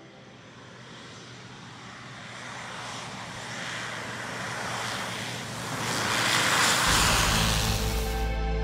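Single-engine propeller aircraft on its take-off roll down a dirt airstrip, a steady engine and propeller noise growing louder as it comes closer. Background music comes in near the end.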